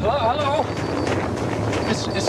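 Commercial soundtrack with a steady rushing like wind, and a short wavering voice in the first half second.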